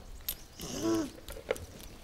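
A short vocal sound from a child, about half a second long, its pitch rising then falling, with a faint click near the end.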